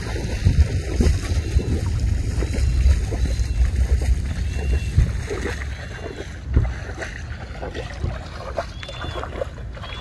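Wading steps through shallow floodwater, water sloshing and splashing around the legs, with wind rumbling on the microphone, strongest in the first half.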